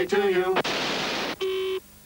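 A voice cuts off, then a burst of hiss like videotape static for under a second, then a short buzzy beep that stops abruptly, leaving faint tape hum.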